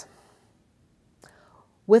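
A lecturer's speech pausing: a word trails off, then a near-silent gap with one short, soft breath, and speech starts again near the end.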